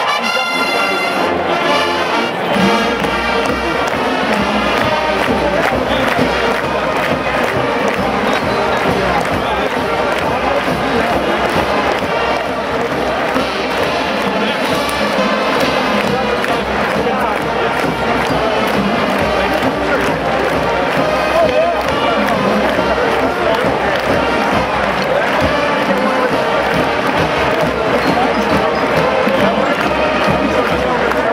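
A university marching band playing a march on brass and drums. The bass and drums come in about two and a half seconds in.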